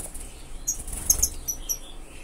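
Caged finches giving a scatter of short, high chirps starting about half a second in, with the soft flutter of wings as birds flit about the cage.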